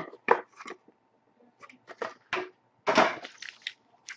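Foil-wrapped trading card packs being handled and set down on a tabletop: a series of short crackles and taps in clusters with quiet gaps between.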